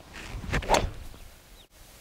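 A golf club swishing through the air on a practice swing: one quick whoosh that swells and fades, loudest about three quarters of a second in.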